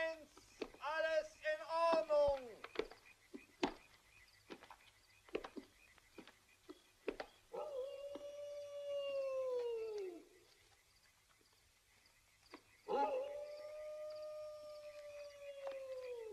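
Two long howls of wild canines in the night. The first starts about seven and a half seconds in and sags in pitch as it dies away. The second starts near thirteen seconds and is held on one pitch. Sharp scattered clicks come before them.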